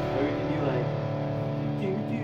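Distorted electric guitars, played through amp-simulation software, letting a held chord ring out at the end of the song as the heavy low end drops away.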